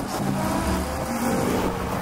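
A motor vehicle engine running, a low steady drone.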